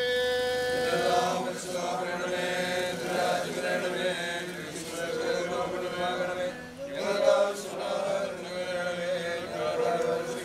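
Voices chanting a Christian funeral hymn in a slow, steady melodic line, with a short break about seven seconds in.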